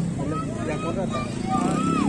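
Young men's voices talking and laughing close up, with a vehicle engine running steadily underneath, most noticeable in the second half.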